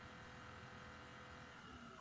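Near silence: faint steady background hiss with a thin, steady hum.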